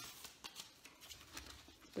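Quiet room tone with a few faint, soft clicks and rustles of handling, likely from papers or a book being handled.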